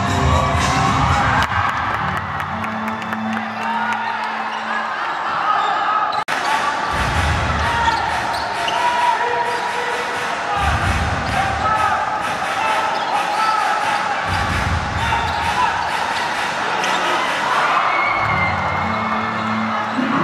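Live basketball play on a hardwood court: the ball bouncing as it is dribbled, with players and coaches calling out on court.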